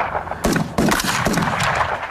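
Rifle shots, several in quick succession: about three loud reports within the first second, then fainter ones, each with a trailing echo.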